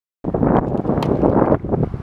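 Wind buffeting the camera microphone, a loud rumbling noise that cuts in abruptly a moment in and eases slightly after about a second and a half.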